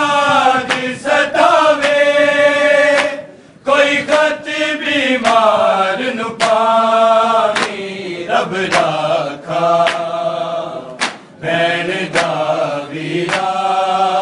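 A group of men chanting a Punjabi noha in unison with long, drawn-out notes, punctuated by sharp slaps roughly every second from matam chest-beating.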